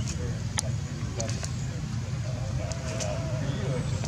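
Steady low background rumble of outdoor ambience, with faint distant voices and a few short sharp clicks.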